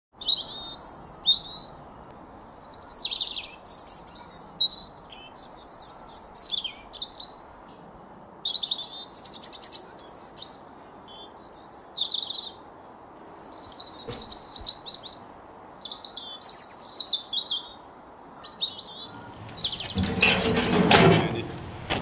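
Small songbirds chirping over and over, short high calls and quick falling sweeps, over a steady faint outdoor hiss. About two seconds before the end, a louder rushing noise comes in.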